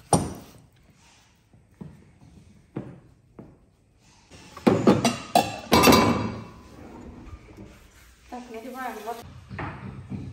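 Kitchenware being handled: a sharp knock right at the start, a few light knocks, then a louder burst of clatter with a brief metallic ring around the middle.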